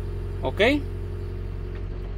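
John Deere 444K wheel loader's diesel engine running steadily, a low even hum heard from inside the cab.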